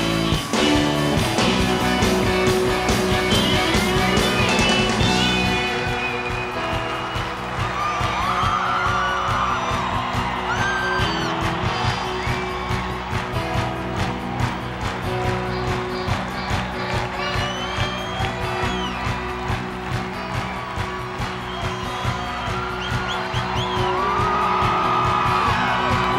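Live rock band music with guitars over a steady beat, played loud.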